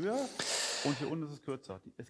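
Quieter speech in a lull of the main voice, with a soft breathy hiss about half a second in.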